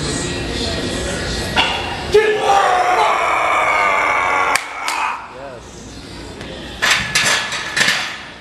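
A long, strained yell during the final rep of a heavy barbell back squat, followed a couple of seconds later by a quick cluster of sharp clanks.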